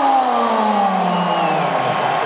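Ring announcer's voice over the arena PA holding one long drawn-out call that slowly falls in pitch and ends near the close, over crowd noise.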